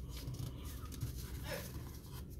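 Faint handling of a folded paper banknote on a tabletop, over low room noise.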